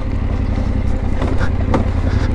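Yamaha Ténéré 700's parallel-twin engine running steadily at low speed as the motorcycle rides a dirt forest track.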